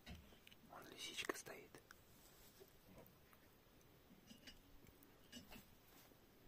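Near silence, with a faint murmured voice about a second in and a few soft clicks later on.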